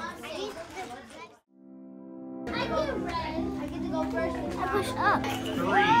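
Young children chattering and calling out over background music. The voices drop out briefly about a second and a half in, leaving only the music, then come back louder.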